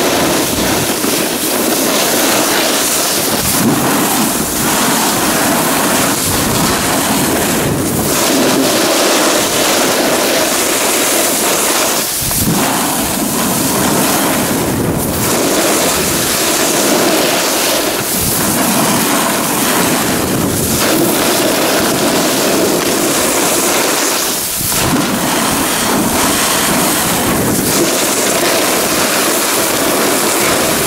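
Wind rushing over the camera's microphone together with skis scraping on firm groomed snow during a steady downhill run, dipping briefly a few times.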